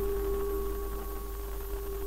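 A single steady held tone at a fixed pitch, over a constant low hum from the old film soundtrack.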